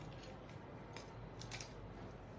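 Faint handling noise: a few soft clicks about a second in and again around one and a half seconds, over a steady low hum.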